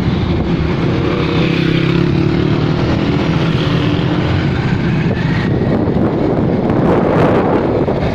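A small vehicle engine running steadily while moving, with wind on the microphone. The wind noise grows louder near the end.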